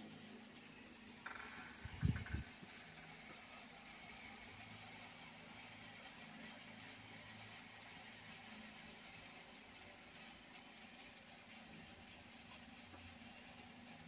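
Faint steady room hiss with a low hum. A short knock comes about a second in, then a dull low thud about two seconds in.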